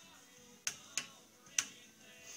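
Three light, sharp clicks as a turned wooden whorl is worked off its press-fit jig on a lathe that has been stopped.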